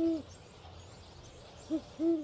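Owl hooting: one hoot at the start, then a quick pair of hoots near the end, over a faint background hiss.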